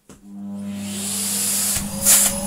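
Numatic Henry HVR160 vacuum cleaner, fitted with a replacement motor, switched on and running up to speed: a steady hum with a whine rising in pitch, growing louder. Just before the end a sudden loud burst sets in as the long hose sucks itself in under the suction, which is called a massive bang.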